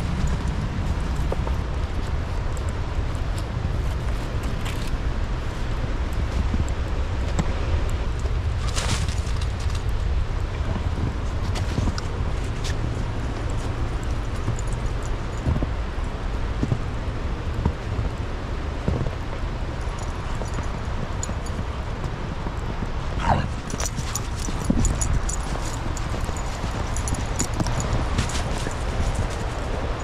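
Footsteps crunching through snow, with a steady low rumble on the microphone and a few sharp clicks and snaps, mostly in the last third.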